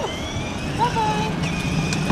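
Electric motor of a child's battery-powered ride-on toy car whirring steadily as it drives, with short voices around it.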